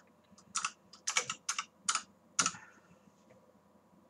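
Typing on a computer keyboard: about seven quick, sharp keystrokes over the first two and a half seconds.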